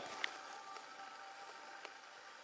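A quiet pause in television audio: faint hiss with a faint held tone underneath, and two small clicks, one just after the start and one near the end.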